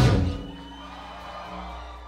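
A live ska-punk band with trombone hits the final loud chord of a song, which cuts off sharply about a third of a second in. Faint sustained notes and a low amplifier hum ring on afterwards.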